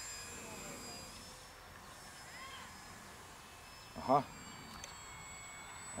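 Faint, steady high whine of a small electric RC warbird's motor and propeller flying overhead, drifting slightly in pitch as it climbs. A short voice sound breaks in about four seconds in.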